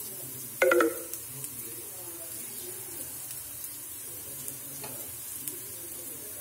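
Kababs frying in oil on a flat griddle (tava): a faint steady sizzle with light scattered crackles. A brief, loud pitched sound cuts in about half a second in.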